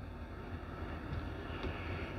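Quiet room tone with a faint, steady low rumble.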